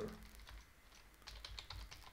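Faint typing on a computer keyboard: a quick run of several keystrokes in the second half.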